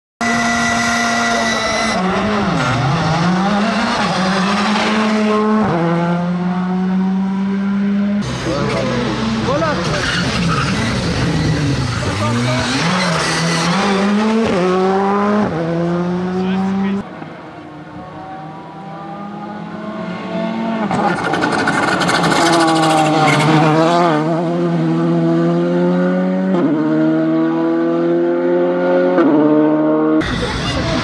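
Rally cars at full speed, a Skoda Fabia R5 among them, engines revving hard, with the pitch climbing and then dropping sharply at each gear change. The passes come one after another as separate shots, with a quieter stretch about halfway before the next car comes up loud.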